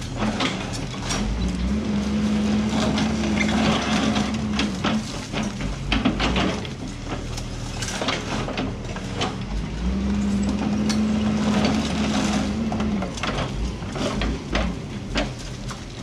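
A Doosan DX140W wheeled excavator's diesel engine working under load, its note swelling and holding twice for a few seconds as the hydraulics strain. Meanwhile its hydraulic crusher jaws break up concrete rubble with repeated cracks and crunching, which sounds like chewing peanuts, freeing the steel reinforcing bar from the concrete.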